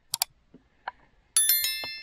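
Subscribe-button animation sound effect: two quick mouse clicks, then a high ding of several bell tones about one and a half seconds in, fading away.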